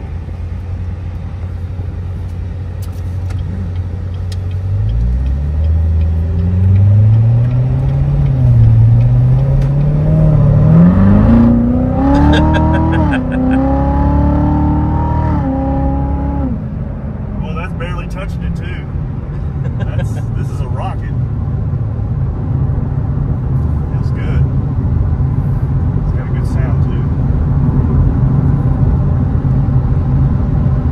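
Supercharged LT4 V8 of a C7 Corvette Z06, heard from inside the cabin as the car accelerates through the gears. About five seconds in, the engine note climbs steeply, with several quick upshifts. Around sixteen seconds in it settles into a steady low cruising drone with road noise.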